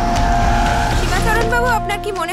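SUV engine and tyres pulling up, a heavy low rumble under a held music note; about halfway through, several voices start calling out over it.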